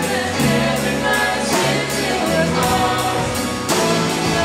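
Christian worship band playing live: voices singing together over acoustic guitar and keyboard, with a steady beat.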